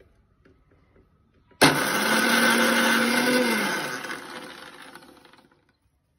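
Electric mixer grinder with a small steel jar switched on about a second and a half in, running steadily for about two seconds as it grinds a wet mash, then switched off and winding down, its hum falling in pitch and fading away.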